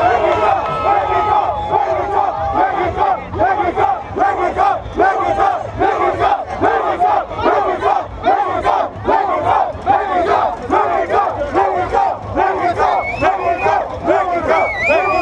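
A crowd of soccer fans chanting and shouting together in a steady repeating rhythm, with a hand-carried drum beaten along.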